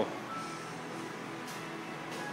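Faint steady hum of a room with soft background music: a few brief notes at different pitches.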